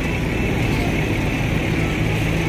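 Bus engines idling with traffic noise, a steady low hum.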